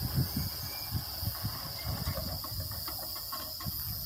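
A train going away down the line, a faint low rumble with irregular wheel knocks as it slows way down. A steady high insect buzz runs underneath.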